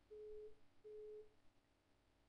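Avira AntiVir Guard detection alarm: a single-pitched beep repeating about every three-quarters of a second, sounding twice and then stopping about a second and a half in as the alert is dismissed. It signals that a virus or unwanted program, here a Trojan, has been found.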